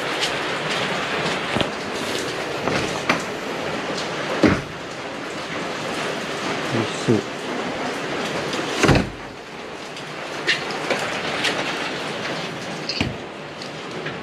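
Steady hiss of rain on roofing, with a few knocks and a louder thump about nine seconds in, after which the rain is fainter.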